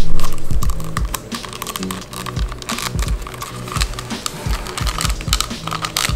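Small plastic figure parts clicking and rattling in a rapid, irregular run as a sword piece is pushed and worked into a tight socket on the figure, over background music.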